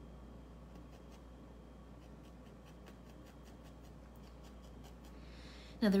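A felting needle repeatedly stabbing into wool over a foam pad, giving faint, quick ticks a few times a second.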